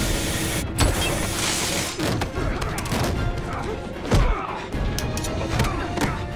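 Action-film soundtrack: score music under fistfight sound effects, with several heavy thuds of blows and men grunting. A hiss of pressurised gas spraying from a leaking line runs through the first two seconds.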